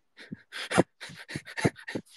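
A man laughing breathily, about eight short puffs of air in quick succession.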